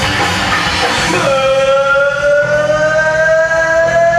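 Live rock band playing, with drums and electric guitar. About a second in, a long held note starts and rises slowly in pitch over the following few seconds.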